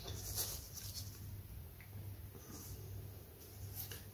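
Craft knife blade cutting through a paper template into thin 1/16-inch balsa sheet: faint, intermittent scratching, with a low steady hum beneath.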